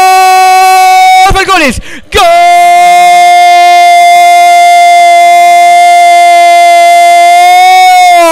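A radio football commentator's goal cry: a long shouted "gol" held on one high note, announcing a goal. The first held note breaks off about a second in, and after a short gap a second one is held for about six seconds.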